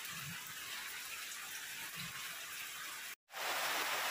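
Steady hissing background noise. It drops out completely for a moment about three seconds in, then comes back louder.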